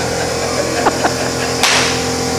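Steady background hum with two faint clicks about a second in and a short breathy hiss shortly after.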